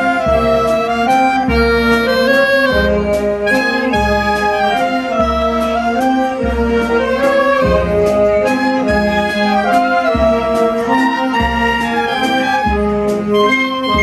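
A wind band of clarinets, saxophones and oboe playing a tune in held notes, over low bass notes on a slow, steady beat.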